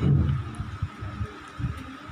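A pause in a man's speech over a microphone and loudspeakers: his last word dies away in the hall's echo in the first half second, leaving an irregular low rumble and a faint steady tone.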